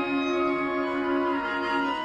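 Symphony orchestra strings playing a slow passage of long, sustained held notes.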